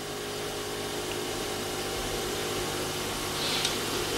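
Steady hiss with a faint low hum throughout, with no distinct events.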